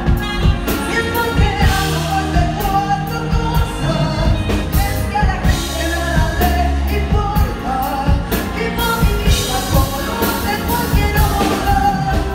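Live pop-rock band performance: a woman sings lead into a microphone over drum kit and electric bass, with a steady driving beat.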